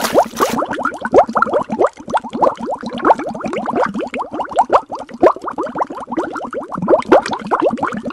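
A splash, then continuous underwater bubbling: a rapid stream of short rising bloops.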